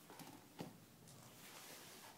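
Faint soft bumps, two of them close together early on, as a bull terrier nudges a large rubber ball away with her nose.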